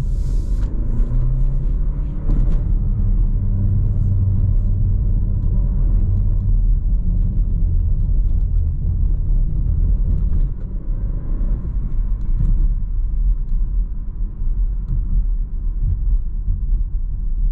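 Cabin sound of a 2021 Renault Arkana's 1.3 TCe turbocharged four-cylinder petrol engine pulling the car along at town speed: a steady engine drone under tyre and road rumble, easing off a little about ten seconds in.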